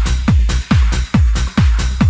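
Trance/techno dance music with a heavy four-on-the-floor kick drum, a little over two beats a second, each kick dropping in pitch, with cymbal strokes between the beats.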